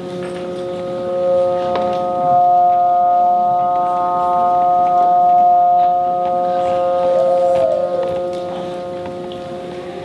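Trombone playing long sustained notes that sound together with other steady pitches as one held chord, swelling over the first couple of seconds. About seven seconds in, one pitch slides up and then down.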